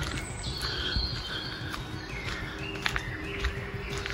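Faint birdsong in woodland: short high chirping phrases that come and go. Under it is the low shuffle of footsteps and handling noise from someone walking along a path.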